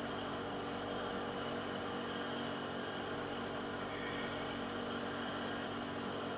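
Steady background hum from a running electric appliance, with a few held tones and a light hiss above, and a brief soft hiss about four seconds in. No stitching from the sewing machine is heard.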